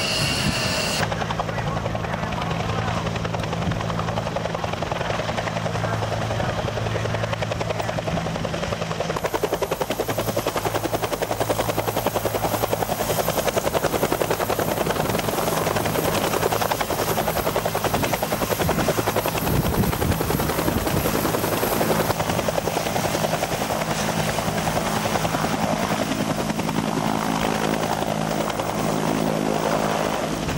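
Military turbine helicopter running close by: a steady low engine and rotor drone, with a high turbine whine through the middle stretch.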